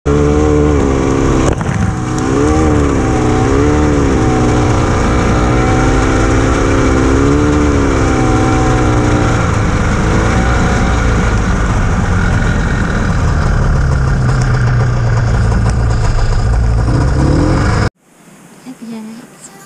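Arctic Cat snowmobile engine running under load from on board the machine, its pitch rising and falling again and again as the throttle is worked along a rough trail. It cuts off abruptly near the end.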